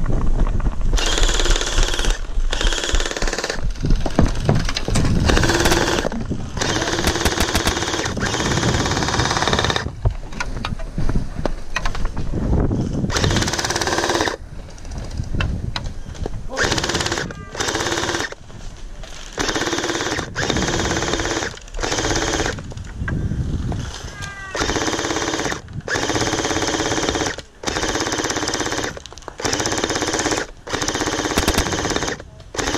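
M249 V3 LMG gel blaster, an electric motor-driven gearbox blaster, firing on full auto in repeated bursts of about one to three seconds each with short pauses between, a fast mechanical rattle of the gearbox cycling.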